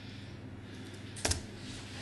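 A single sharp click of a laptop key being pressed, a little past a second in, over a steady low room hum.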